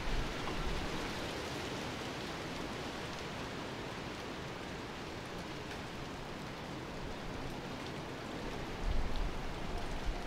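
Steady hiss of heavy wet snow falling and pattering on leaves and ground, with brief low rumbles just after the start and again near the end.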